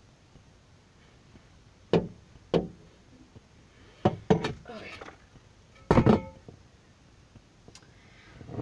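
About five sharp knocks and thumps inside a car, spread over a few seconds, the last the loudest.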